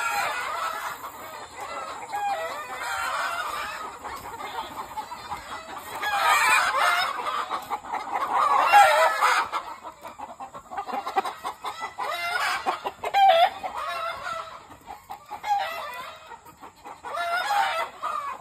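A flock of chickens, roosters among them, clucking and calling in complaint, with a busier, louder stretch in the middle.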